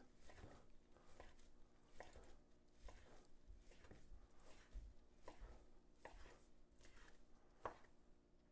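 Chef's knife chopping raw beef on a wooden cutting board: faint, steady knife strikes about two to three a second, with one louder strike near the end.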